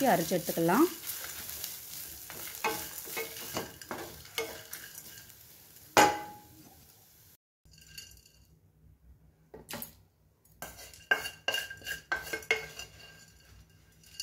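A wooden spatula stirs and scrapes grated coconut, dried red chilli and whole spices as they dry-roast in a nonstick pan, with a faint sizzle and a sharp knock about six seconds in. After a sudden break, the roasted spices are tipped into a stainless-steel mixer-grinder jar with light clinks and knocks.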